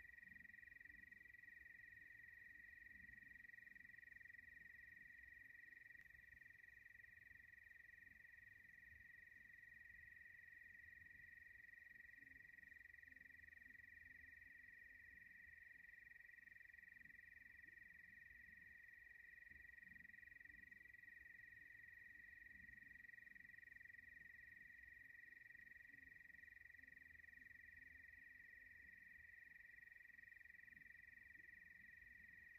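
Near silence: a faint, steady high-pitched tone with a low rumble beneath it.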